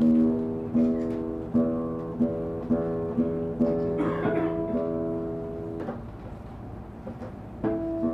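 Acoustic guitar picked in a slow arpeggio, notes ringing over a held chord. The notes die away about six seconds in, and a new chord is struck near the end.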